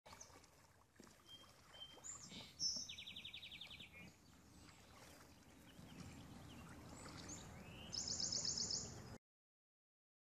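Small birds singing outdoors: scattered short chirps, a rapid trill about three seconds in and a higher, louder trill near the end, over faint low background noise. The sound cuts off to silence about nine seconds in.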